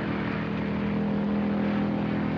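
Steady drone of airship engines heard inside the passenger cabin: an even, low hum with a held tone.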